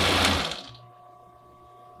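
Electric Pfaff sewing machine running a short burst of stitches, stopping within the first second.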